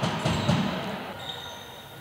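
Sports hall ambience with a few basketball bounces, fading steadily away. A faint, steady high tone comes in about halfway through.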